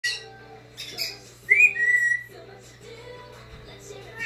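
Brown-headed parrot whistling: a couple of short sharp calls, then one clear whistle about one and a half seconds in that swoops up and settles into a held note.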